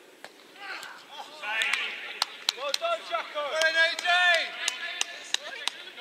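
Footballers shouting on an outdoor artificial pitch, loudest about four seconds in, over a run of sharp, irregular knocks.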